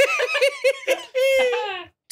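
A man laughing in high-pitched giggles: a quick run of about six short laughs in the first second, then one long squealing laugh that slides down in pitch and breaks off shortly before the end.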